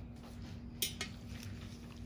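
Steady low room hum with two short sharp clicks near the middle, about a fifth of a second apart.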